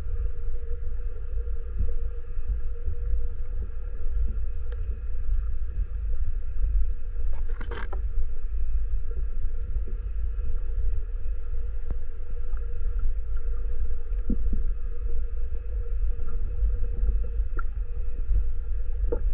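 Muffled underwater sound picked up by a GoPro held under water while snorkeling: a steady low rumble of water moving around the camera, with a faint steady hum over it and a short hiss about eight seconds in.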